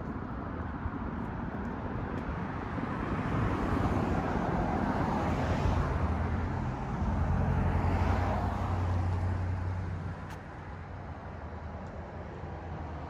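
Cars passing along the street, one after the other: tyre and engine noise swells twice, about four and eight seconds in, then fades near the end.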